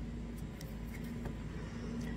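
Steady low background hum with a faint held tone, and a few faint soft ticks over it.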